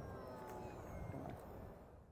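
Distant whine of an RC aerobatic plane's electric outrunner motor and propeller, several steady tones sliding slowly lower, over wind rumble on the microphone. It fades out near the end.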